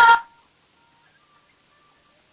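A man's voice finishes a phrase in the first moment, then near silence with a few faint, thin steady tones.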